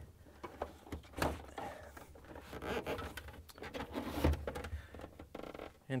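Refrigerator ice maker assembly being slid back along its plastic rails into the freezer compartment: faint plastic rubbing and scraping, with a few sharp clicks and knocks, one about a second in and another about four seconds in.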